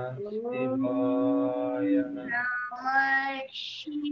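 A devotional chant sung by a group of female and child voices, heard over a video call, with long held notes moving slowly up and down. A brief hiss comes near the end.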